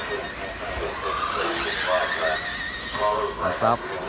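1/8-scale nitro RC buggy engines buzzing around the track, one whine rising in pitch about a second in, with people talking over it.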